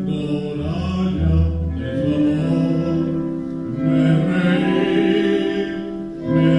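A man singing solo, a slow melody of long held notes.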